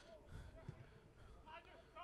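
Near silence, with faint voices in the background.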